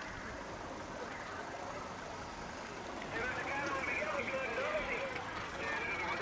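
Street ambience with a slow-moving car running. Indistinct voices come in about three seconds in.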